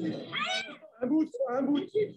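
Excited human voices calling out, with a high rising cry about half a second in.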